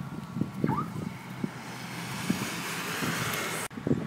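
Roadside outdoor noise: traffic on the road alongside and wind buffeting the microphone in irregular low thumps.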